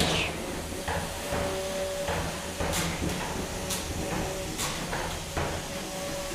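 3 lb combat robots fighting in an arena: a steady whine from Vespula's spinning egg-beater drum, with about half a dozen sharp knocks from hits and scrapes.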